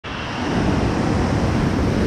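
Floodwater from an overflowing reservoir rushing down a rocky dam spillway and over its cascades: a loud, steady rush of water.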